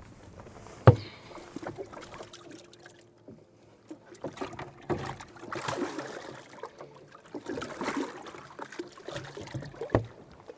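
A single hard knock about a second in, then water splashing in twice as a bass is lifted, flapping, out of a bass boat's livewell.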